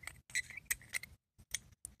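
Light, irregular clicks and scrapes of small aluminium head-torch parts being handled and fitted together as the circuit board assembly is slipped back into the torch body.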